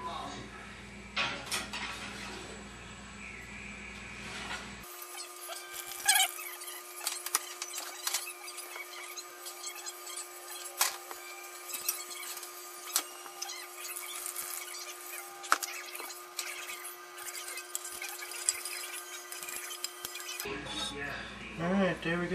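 Kitchen handling sounds: scattered clinks and knocks of a glass baking dish and utensils at an open oven. A steady hum comes in about five seconds in and stops shortly before the end.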